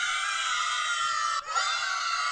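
A shrill, high-pitched, scream-like screech held steady, broken by a brief gap about one and a half seconds in, then starting again.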